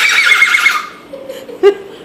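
A boy imitating a horse's neigh with his voice: a loud, high, quavering whinny lasting about the first second, followed by a brief fainter vocal sound.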